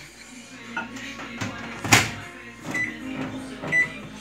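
A mug being set inside a Daewoo microwave oven and the door shut, a few light knocks and then a loud clack about two seconds in. Near the end come two short high beeps from the keypad as the cooking time of 30 seconds is entered.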